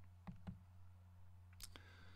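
Near silence: a low steady hum with a few faint clicks from operating a computer, two close together in the first half-second and one near the end.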